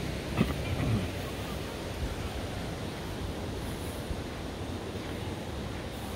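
Outdoor ambience dominated by a steady, fluctuating low rumble of wind on the microphone, with a brief faint voice about half a second in.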